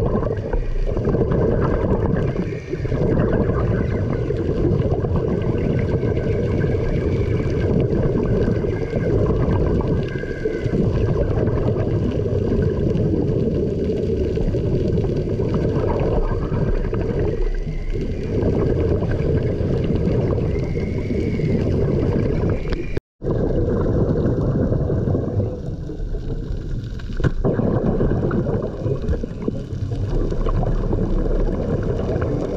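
Underwater noise on a night dive: a steady, heavy low rush with gurgling from the diver's exhaled air bubbles, and faint wavering high tones coming and going. The sound cuts out completely for a moment about 23 seconds in.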